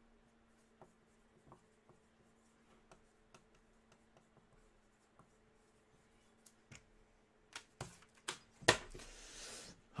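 Quiet handling on a wooden desk: sparse light taps and clicks as a Sharpie marker and other small items are handled and set down, over a faint steady hum. Near the end come a few louder taps and a short burst of noise under a second long.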